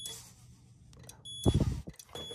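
Digital multimeter's continuity beeper sounding a steady high beep at the start and again briefly about one and a half seconds in: the beep marks the furnace pressure switch's contacts closing under air blown into its positive-pressure port. A loud puff of breath into the switch's hose comes with the second beep.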